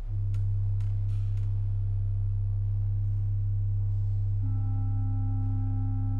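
Pipe organ opening with a deep, steady low note and a softer higher note held above it. About four and a half seconds in, further higher notes enter, building a sustained chord.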